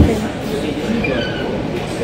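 A sharp knock right at the start, then a steady low rumble of shop noise with faint voices underneath.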